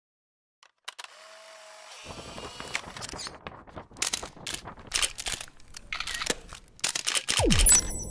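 Camera sound effects: a steady motor whirr, like an instant camera pushing out a print, then a quick run of sharp shutter clicks. Near the end a falling swoop leads into the start of a music sting.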